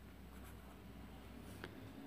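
Faint scratching of a pen writing a digit on a paper workbook page.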